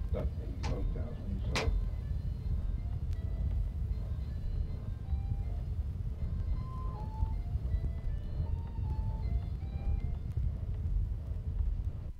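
Steady low rumble and surface noise from a worn vinyl record, with a few sharp clicks in the first two seconds. Faint, sparse high notes at changing pitches drift over it, like a slow, quiet melody.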